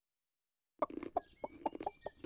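Silence for the first second, then a cartoon hen clucking in a quick string of short, sharp clucks.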